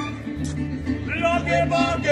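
Live mariachi band playing, with guitars strumming a steady rhythm. About a second in, a male mariachi singer comes in with held, wavering notes.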